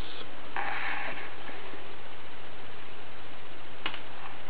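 Steady background hiss with a faint low hum, a short rustle about half a second in, and one sharp click near the end.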